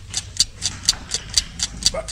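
A clock ticking steadily, about four ticks a second, set going again by being shaken.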